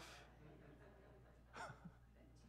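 Near silence: faint room tone with a low steady hum, and one brief breath about one and a half seconds in.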